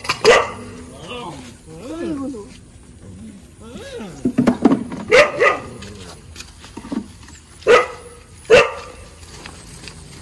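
A dog barking several times in short, sharp barks, with whining or yelping in between.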